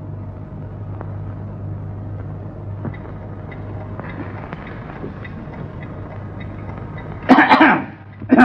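A man coughing: a loud fit of a few quick coughs near the end, over the steady low hum of an old film soundtrack.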